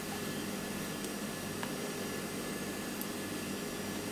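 Steady background hiss with a faint hum, broken by a few faint ticks.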